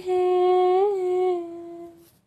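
A woman's unaccompanied singing voice holding one long note, with a slight lift and fall in pitch about a second in, then fading out and stopping near the end.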